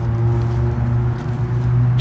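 A steady low mechanical hum, even in pitch and level throughout.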